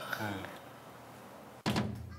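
A single thud of a kitchen cupboard door shutting about one and a half seconds in, after a few faint words.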